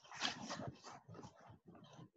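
A faint series of short whimpering cries, like an animal's, about three a second and fading toward the end.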